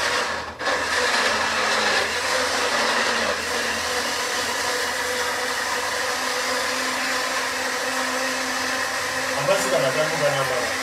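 Electric blender running steadily, blending watermelon into a smoothie. Its motor drops out briefly about half a second in, then runs on without a break.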